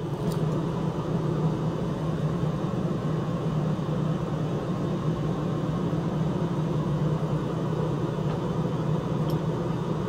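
A steady low mechanical hum with a hiss of noise above it, unchanging in level.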